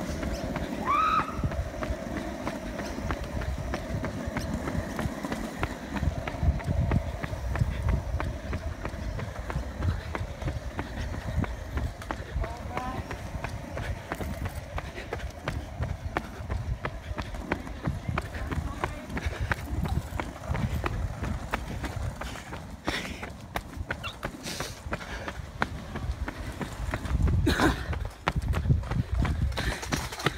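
Running footsteps on asphalt, with wind and handling rumble on a hand-held phone microphone. A few sharper knocks come near the end.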